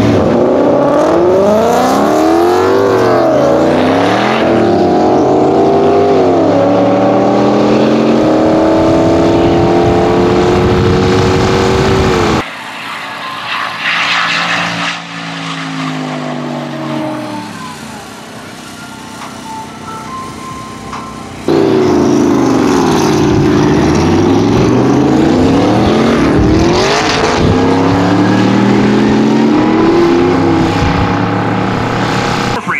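Race cars launching and accelerating hard at full throttle, the turbocharged C5 Corvette's V8 among them: engine pitch climbs and dips again and again as they shift up through the gears. About twelve seconds in the sound drops suddenly to quieter, distant engine noise, and about twenty-one seconds in loud engines revving up through the gears return.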